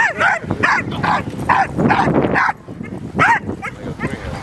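American Pit Bull Terrier yipping and barking in a quick series of short, high calls, about two a second, then a short pause and one or two more near the end. The dog is held back at the start line and straining to chase the moving lure.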